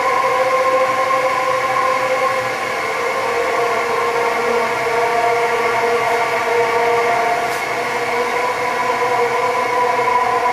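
Ambient electronic drone: layered sustained synthesizer tones over a steady hiss, their pitches shifting slowly.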